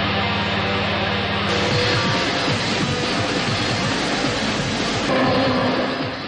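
Background music over a car engine running hard, with a steady low engine note through the first couple of seconds.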